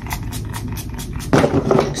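Pump bottle of makeup setting spray misting onto the face: a few short sprays right at the start, then a louder, longer rush of noise about a second and a half in.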